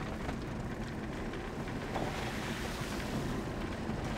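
Steady rumble of a moving vehicle heard from inside its cabin, engine and road noise with wind noise over it.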